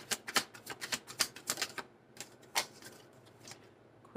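A deck of tarot cards being shuffled by hand: a quick run of card-on-card clicks, about six a second, that stops about two seconds in, followed by a few single taps.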